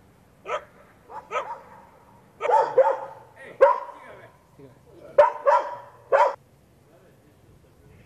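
A dog barking about ten times in short bursts, some in quick pairs and triplets, stopping after about six seconds.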